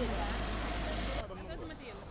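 Faint, distant talking over a steady low hum of an idling vehicle. The hum cuts off abruptly a little past halfway, leaving only the quieter voices.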